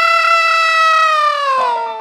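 A single high sustained note, held steady and then sliding slowly down in pitch from about a second and a half in, with a piano note struck as it begins to fall.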